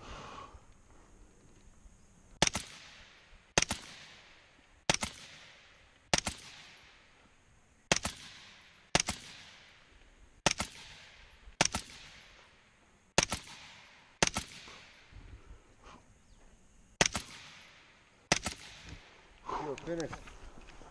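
AR-15-style rifle fired in slow, aimed single shots, about a dozen in all, roughly one to one and a half seconds apart with a few longer pauses. Each shot is a sharp crack that trails off in an echo.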